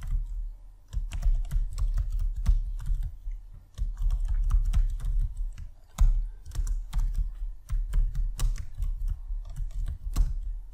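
Computer keyboard typing: quick, irregular runs of keystrokes with brief pauses between them.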